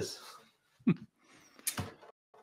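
The end of a spoken word, then two short vocal sounds about a second apart, with faint low noise between them.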